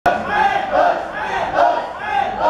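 A group of voices shouting on a football pitch: a run of loud, overlapping shouts from players and sideline supporters.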